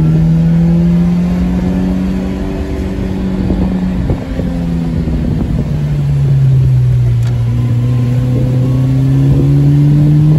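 Fiat X1/9's mid-mounted 1.5-litre four-cylinder engine running under way, heard from inside the cabin over road noise. The engine note drops about four seconds in, stays lower, then climbs again near the end.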